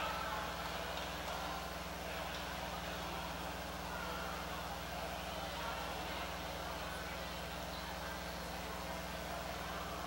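Steady low electrical hum under a faint background murmur of voices.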